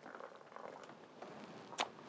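Boiling water poured in a thin stream from a glass kettle onto potting soil in a tray, a faint trickle, scalding the soil to kill fungus gnats and their eggs. A single sharp click near the end.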